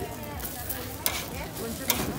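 Riguas (fresh-corn cakes) sizzling on a hot griddle, with two sharp clicks about a second apart.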